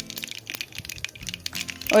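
Cumin seeds sizzling in hot oil in a pan, with a light crackle of many small pops, under faint background music.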